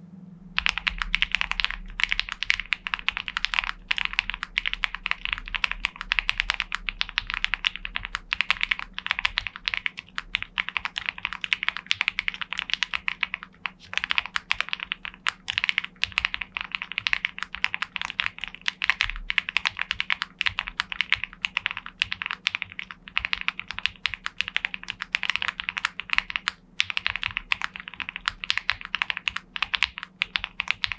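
Fast continuous typing on a gasket-mounted Mammoth75 mechanical keyboard with lubed and filmed Banana Split linear switches, a polycarbonate plate and GMK Modo Lite keycaps, no case PCB foam: a poppy sound, with a few short pauses.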